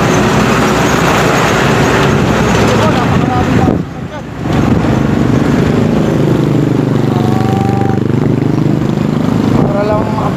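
Motorcycle engine running under way, with wind rushing over the microphone. The sound drops away briefly about four seconds in. In the second half the engine note falls and then climbs again as the rider eases off and speeds back up.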